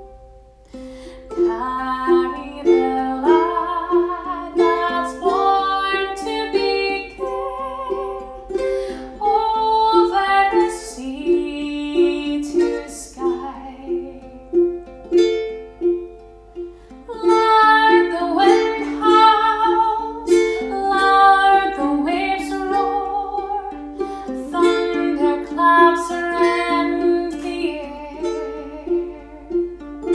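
A woman singing a gentle song while accompanying herself on ukulele in a steady rhythm. Her voice drops out for a few seconds in the middle while the ukulele carries on.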